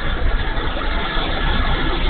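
Wind buffeting the microphone of a wing-mounted onboard camera on an electric RC float plane in flight, with a faint steady hum from its brushless motor and propeller underneath.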